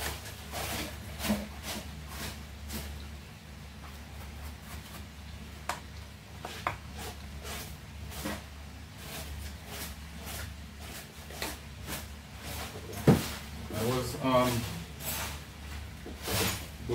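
Scattered light clicks and knocks from kitchen things being handled, with one sharper knock near the end, over a steady low hum. Some brief low talk comes near the start and again near the end.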